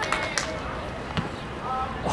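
Open-air soccer pitch sound: wind rumble on the microphone, faint distant shouts from players, and a few short knocks of a soccer ball being kicked as the shot on goal is struck.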